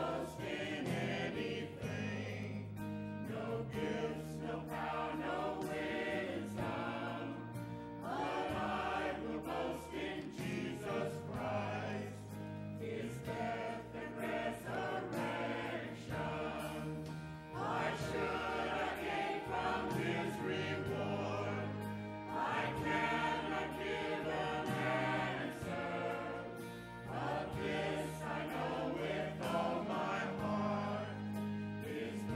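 Church choir singing, with long-held low notes underneath the voices.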